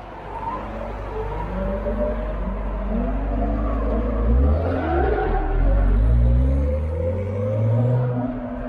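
Mk4 Toyota Supra (JZA80) with its 2JZ straight-six pulling away, the engine revs climbing and dropping back several times. A deep, loud exhaust rumble builds from about halfway through.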